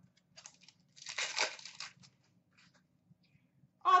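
A hockey card pack's wrapper being torn open by hand: one short rip about a second in, lasting under a second, with faint handling rustle before it.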